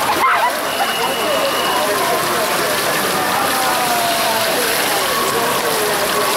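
Swimmers splashing as they race backstroke, a steady wash of water noise, with spectators' indistinct shouts and calls over it.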